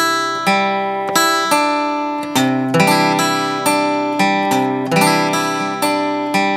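Steel-string acoustic guitar picked with a plectrum, single strings sounded one after another about twice a second and left to ring over each other; the chord changes a little over two seconds in.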